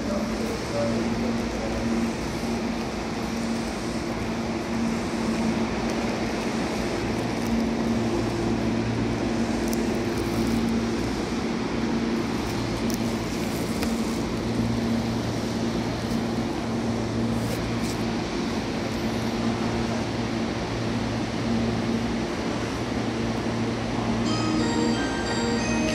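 Tobu 10000 series electric train running, heard from inside the car: a steady rumble of wheels on rail with a low motor hum that swells and fades, and a few faint clicks.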